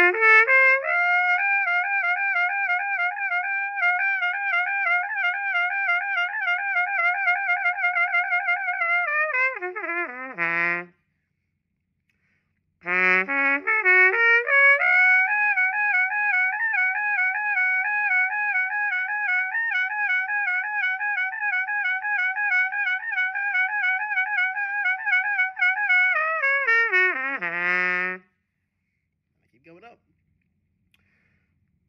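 Trumpet playing two runs of a lip-slur range exercise. Each run steps quickly up through the horn's natural notes, flutters rapidly back and forth between the top notes for several seconds, then steps back down. After a two-second pause the second run starts a half step higher.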